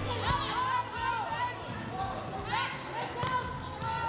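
Gym court sounds: sneakers squeaking on the hardwood floor and a few ball thuds, over background music.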